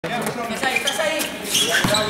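Basketball game on an indoor court: the ball and players' shoes on the hard floor, with players' voices calling out.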